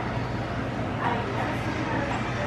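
Restaurant room noise: a steady low hum under faint background voices, with a brief call-like sound about a second in.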